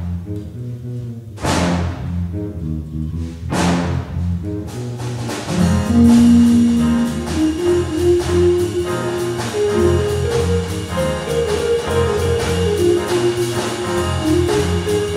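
Live jazz big band playing: saxophones, brass, electric guitar, piano, bass and drum kit. It opens with three cymbal crashes about two seconds apart over low held chords. From about five seconds the full band comes in with a steady drum beat, a long held note and then a moving melody.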